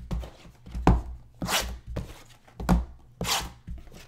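Shrink-wrapped cardboard trading-card hobby boxes being handled and set down on a table mat: about five separate dull thuds and knocks, the heaviest near 1 s and near 3 s in.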